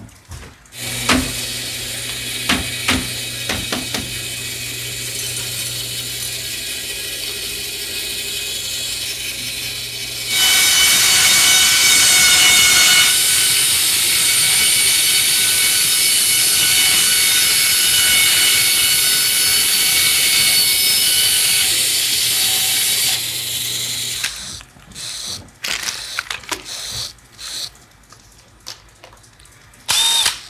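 Bandsaw motor running with a steady hum; about ten seconds in the blade bites into a zip-tied bundle of plastic tubes and the sound turns louder and harsher for about thirteen seconds as it cuts through. The saw winds down near the end, followed by a scatter of clicks and knocks.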